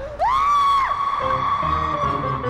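A short, loud, high-pitched scream that rises, holds for about half a second and drops away, followed by background music with a long held high note.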